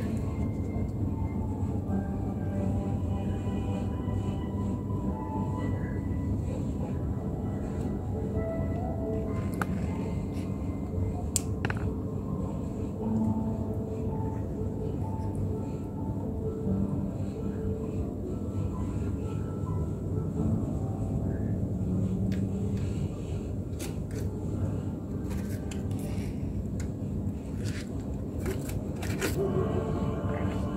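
Steady low rumble of room noise under faint background music, with a few light clicks about a third of the way in and again near the end.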